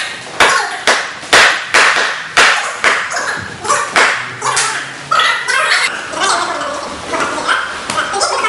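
A quick series of punches slapping into a handheld strike pad, about two a second, thinning out after about four seconds.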